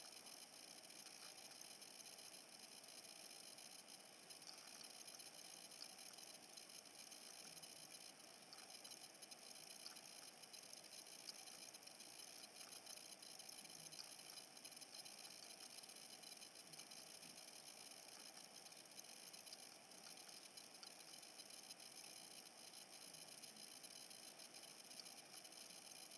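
Near silence: faint steady hiss with a few faint scattered ticks.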